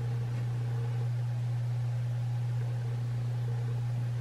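A steady low hum with a faint hiss behind it, unchanging throughout, and no other sound.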